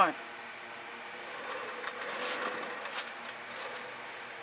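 Faint clicks and a brief rustle as a wet acrylic-pour canvas is lifted, turned and tilted on cardboard strips, over a steady background hiss.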